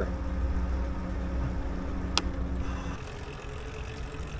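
Lectric XP Trike's electric hub motor whining steadily while riding, over a low rumble of tyres and wind. The whine fades out and the sound drops about three seconds in as the trike slows. There is a single sharp click about two seconds in.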